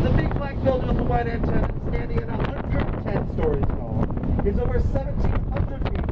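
Wind buffeting the microphone on a moving speedboat, a steady low rumble with frequent gusts and thumps, with indistinct talking over it.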